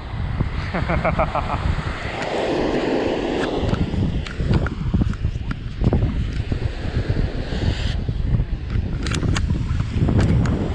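Wind buffeting the microphone over small waves washing onto a sandy beach, with a few sharp clicks near the end.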